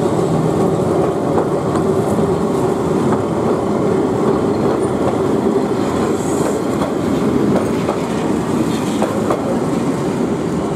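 A Keihan 700-series two-car train passing close by on street-running track and pulling away, its wheels clicking over the rail joints. A brief high squeal comes from the wheels about six seconds in.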